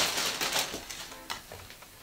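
Plastic bag packaging crinkling as a garment is pulled out of it, the crackle fading away over the first second or so, with faint background music.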